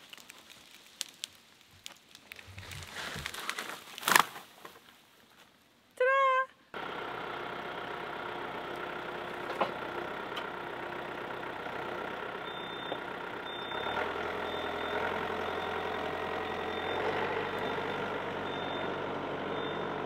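A sharp crack about four seconds in, then from about seven seconds a compact diesel tractor running steadily as it drags a felled pine, with a repeating high beep from its reverse alarm in the second half.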